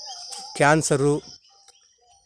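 Insects buzzing steadily at a high pitch outdoors, fading out near the end, with a man's brief spoken word over it.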